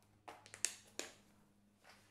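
Small clear plastic compartment box clicking and knocking lightly as it is handled and set down: a few faint sharp clicks in the first second, then one more near the end.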